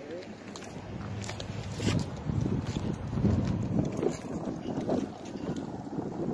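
Wind buffeting the camera microphone: an uneven, gusting low rumble, with faint muffled voices under it.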